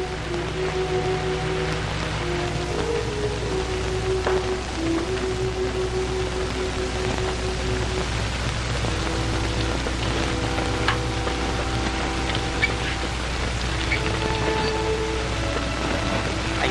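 Background film music: a slow melody of held notes that step from pitch to pitch, over the constant hiss and low hum of an old film soundtrack.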